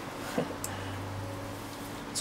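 Faint brushing of a small brush over a PCB in a shallow plastic tray of developer solution, with a couple of soft clicks about half a second in, over a low steady hum.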